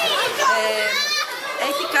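A woman speaking, with children's voices and chatter in the background.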